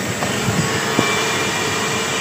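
Steam cleaner nozzle jetting steam in a steady, loud hiss, used to clean a split air conditioner's coil, with a couple of small clicks.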